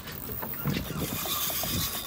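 Boat noise on an offshore fishing boat, a steady rushing haze with muffled voices under it. A faint, steady high whine starts about halfway through.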